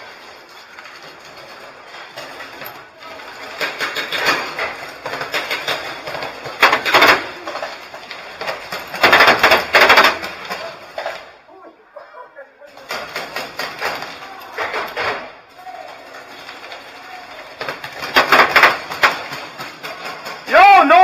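Paintball markers firing in rapid strings of shots, several bursts in a row, the loudest about nine seconds in and again near the end.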